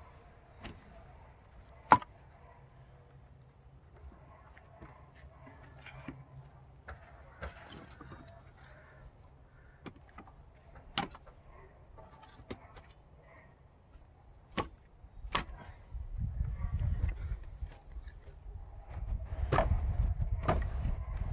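Pieces of split firewood knocking and clattering as they are set down one by one on a stack, with scattered sharp wooden knocks, the loudest about two seconds in. A low rumble comes in during the last few seconds.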